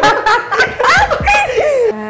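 A woman laughing out loud and heartily, in a run of short rising and falling bursts.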